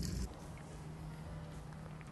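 Faint outdoor background with a low steady hum and hiss; at the very start, a brief faint trickle of liquid running from a barrel's bung into a mesh strainer cuts off as the sound drops lower.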